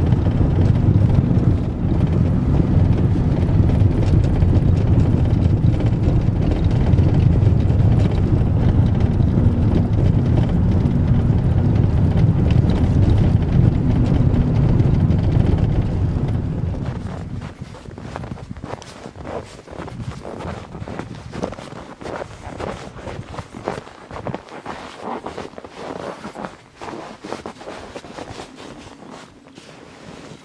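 Vehicle engine and tyre rumble heard from inside the cabin, steady and low, while driving a snow-packed road. About 17 seconds in it stops and gives way to a quieter run of irregular crunches: footsteps in snow.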